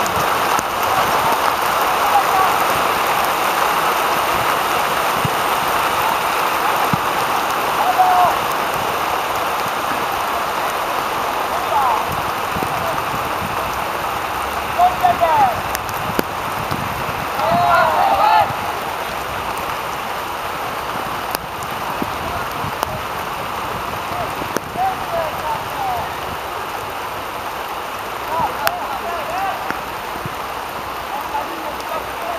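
Youth football match: players' brief shouts and calls across the pitch over a steady hiss, with the loudest calls about halfway through.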